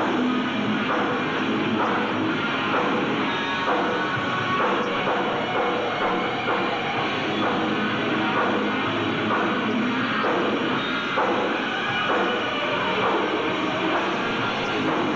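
A hard rock band playing live, a dense, steady wall of electric guitars and drums, muffled on an old recording with the top end cut off.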